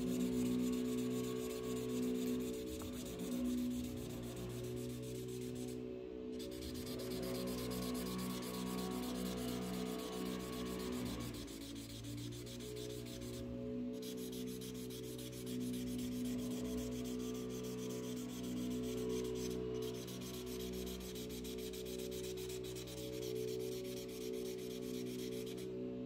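Imagine Ink mess-free marker tip rubbing back and forth across the coated page as it colors in, with soft steady background music underneath.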